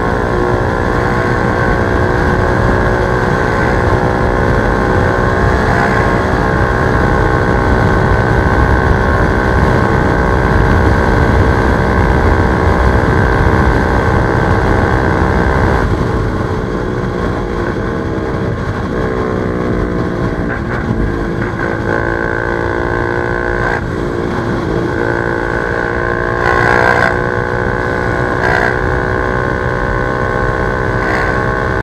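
Bajaj Dominar 400's single-cylinder engine running hard at highway speed, around 140 km/h, under heavy wind rush on the camera microphone. About halfway through the engine note drops a little and wavers in pitch for several seconds, then steadies again.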